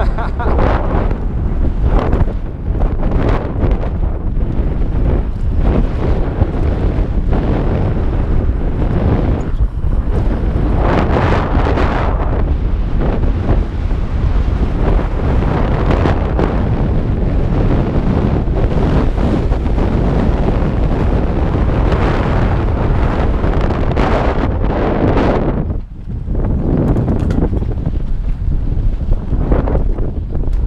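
Steady wind rush buffeting a helmet-mounted GoPro's microphone as a mountain bike rolls fast down a dirt trail, mixed with the rumble of the tyres on dirt. It drops away briefly near the end.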